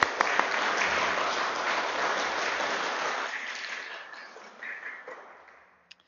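An audience applauding in a hall, clapping that holds steady for about three seconds, then thins out and dies away.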